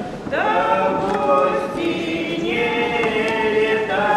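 A woman and a man singing a Russian traditional folk song together, unaccompanied, in long held notes in more than one voice. After a brief breath just after the start, a new phrase begins with a slide up into the note.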